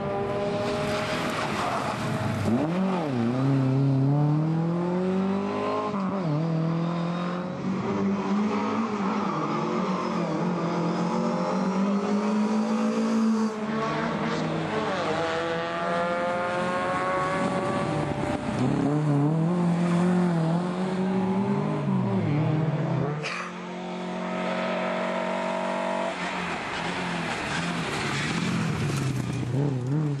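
Rally car engine driven hard, its pitch climbing and then dropping again and again as it changes gear and lifts off for corners. There is a sharp break about two-thirds of the way through.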